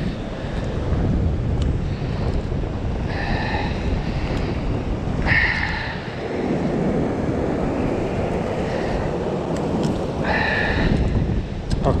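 Wind buffeting the microphone over the wash of waves against a rocky shore, a steady rushing noise. Three brief high-pitched sounds cut through it about three, five and ten seconds in.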